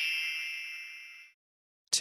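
A single bright chime sounding and fading away over about a second and a half, the signal tone that separates one section of a recorded listening test from the next.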